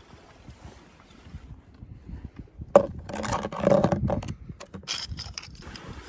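Scraping and handling noises of a toy car being picked up from rock and sand: quiet at first, then a sharp click about three seconds in, a stretch of scraping, and a run of small clicks near the end.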